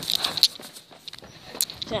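Footsteps on a concrete walkway, a few spaced steps.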